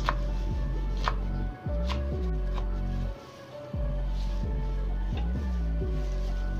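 Kitchen knife slicing celery leaves thinly on a wooden cutting board: separate sharp strikes of the blade on the board, about one a second in the first half.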